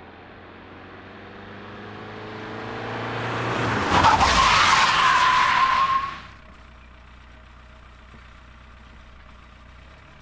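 Volkswagen Golf II 1.6 diesel coming closer with its engine running, growing louder, then braking hard about four seconds in with a loud tyre squeal for about two seconds. The squeal cuts off as the car stops, and the diesel engine idles steadily after that.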